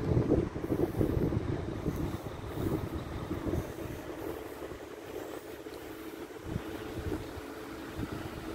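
Wind buffeting the microphone outdoors, heavier in the first few seconds and then easing, over a faint steady low hum.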